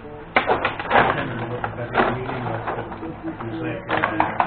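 Benej table hockey game in play: sharp clacks and knocks of the puck and rod-driven players hitting each other and the boards, loudest about a third of a second in, at one second, at two seconds and near the end.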